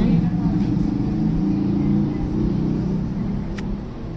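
Steady low rumble, with one sharp click about three and a half seconds in.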